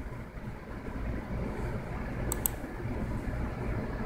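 Steady low hum of room tone, with two quick clicks at the computer a little past halfway.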